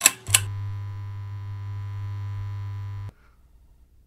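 Logo intro sound effect: two sharp hits a third of a second apart, then a steady low synthesized hum that cuts off suddenly about three seconds in.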